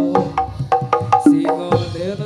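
Live Topeng Ireng dance accompaniment: sharp percussion strikes, about five a second, under a wavering melody.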